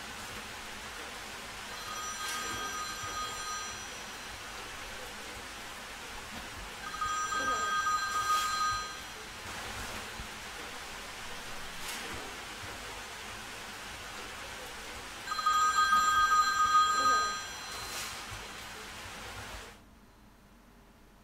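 A telephone ringing three times, each ring lasting about two seconds with a steady electronic tone, over a low hiss; the call is never answered. It cuts off suddenly just before the end.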